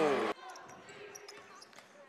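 A commentator's voice stops abruptly about a third of a second in, leaving faint basketball-court sound in an arena: scattered light taps and squeaks.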